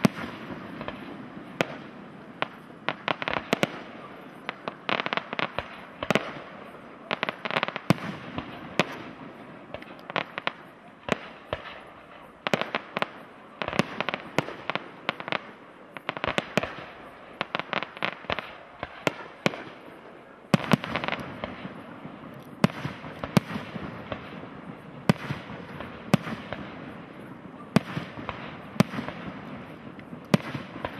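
Aerial fireworks display: shells bursting in a rapid, irregular stream of sharp bangs, often in quick clusters, over continuous crackling. The background thickens about two-thirds of the way in, with several of the loudest reports after that.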